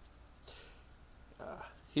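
Near silence with faint room tone, broken near the end by a man's soft spoken "uh".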